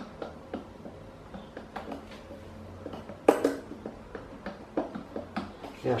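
Light plastic clicks and knocks from a pedestal fan's telescoping pole being moved by hand, with one sharper knock about three seconds in. The noise comes from the pole being set too low, so its parts knock against each other.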